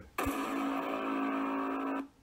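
A steady held sound effect with many pitches at once, starting just after the narration stops and cutting off suddenly at the end.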